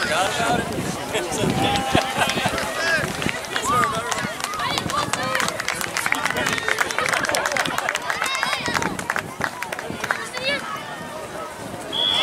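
Indistinct, overlapping voices of spectators and players calling out across an outdoor soccer field, with scattered small knocks and clicks.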